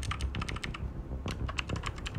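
Fast typing on a computer keyboard, a quick run of key clicks in several short bursts over a low room hum.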